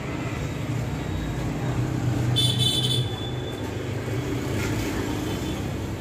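Road traffic: a steady low rumble of passing vehicles, with a short, high-pitched horn toot about two and a half seconds in.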